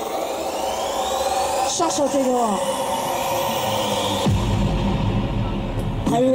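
Electronic dance music played loud over a stage PA: a rising synth sweep builds up, a voice shouts briefly about two seconds in, and heavy bass drops in a little after four seconds in.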